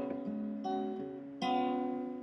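Acoustic guitar playing chords with no voice. Three chords sound about two-thirds of a second apart, and the last is the loudest and is left to ring out.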